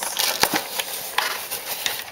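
Cardboard box being folded and pressed flat by hand, scraping and crinkling, with one sharp snap about half a second in.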